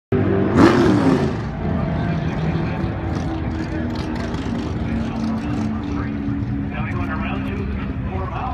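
Vehicle engines idling steadily, with a loud burst of engine noise about half a second in.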